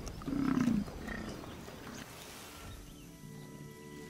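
A short, low animal call about half a second in, then a quieter stretch as held music notes come in during the second half.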